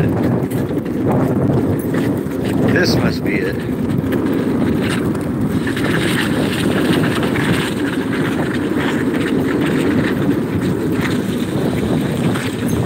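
Steady rushing road noise of a dog-pulled rig rolling along asphalt, mostly low and even, with a few brief faint high chirps about three seconds in.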